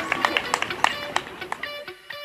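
Crowd sounds with sharp claps, fading out, as music with plucked guitar notes comes in over the second half.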